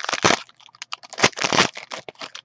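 A foil trading-card pack wrapper being torn open and crinkled by hand. There are two bursts of crackling, one just after the start and a longer one around a second and a half in, with small clicks between.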